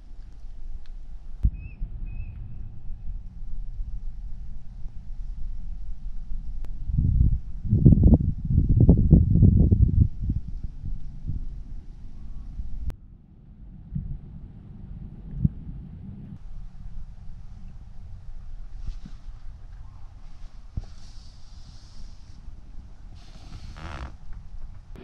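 Low rumbling wind and handling noise on a handheld camera's microphone, loudest about seven to ten seconds in, with a few faint clicks.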